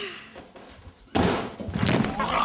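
A person dropping heavily onto a rug-covered wooden floor: a sudden thud a little after a second in, followed by a short stretch of scuffling noise.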